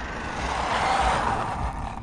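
Traxxas Rustler 4x4 RC truck with a brushless motor running and its tyres rolling on asphalt as it comes in toward the camera; a faint motor whine falls in pitch in the first half while the rolling noise swells and fades.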